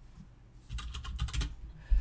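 Typing on a computer keyboard: a short run of keystrokes in the middle, entering one short word.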